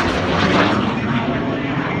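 Loud jet noise from a twin-engine F/A-18 fighter jet flying overhead, easing off slightly after about a second as it moves away.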